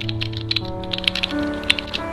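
Irregular run of typing keystroke clicks, about ten in two seconds, over background music of sustained held chords.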